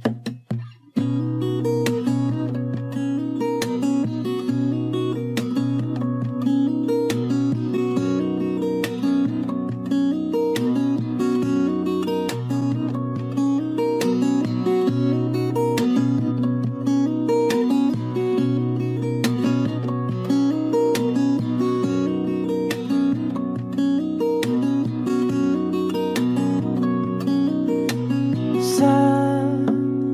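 Music: an acoustic guitar strumming and picking without a voice, starting about a second in after a short gap.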